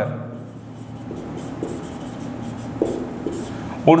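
Marker pen scratching on a whiteboard in a series of short strokes as a word is written out and underlined.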